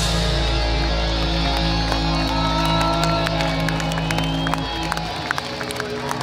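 A metal band's final chord ringing out on guitars and bass through the PA, held and then cut off suddenly about five seconds in. A crowd cheers and claps over it, with the clapping coming through more clearly near the end.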